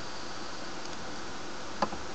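Steady background hiss of a recording microphone with a faint high whine, and one short click near the end.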